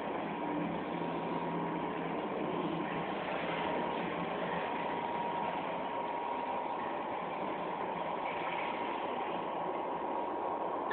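Steady background hum and hiss with a faint, high, steady tone running through it.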